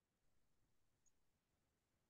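Near silence: faint room tone on a video call.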